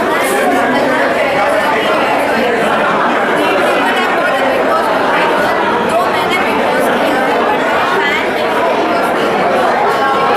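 Many voices talking over one another in a steady, loud hubbub of crowd chatter.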